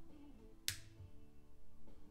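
Panasonic CQ-473 MKII car radio playing music on FM, with one sharp click of a light switch a little under a second in as the room lights go off.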